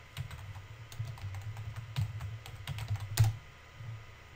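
Typing on a computer keyboard: a quick run of keystrokes, with one louder key strike a little after three seconds in.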